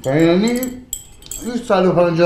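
A metal teaspoon clinks against a small tea glass as tea is stirred, with a few quick rings about a second in. A man's loud voice, gliding up and down in pitch, fills the first moment and comes back near the end.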